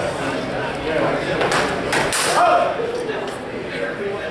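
Steel longswords striking in a sparring exchange: a few sharp strikes about one and a half to two seconds in, followed by a short shout, with voices around.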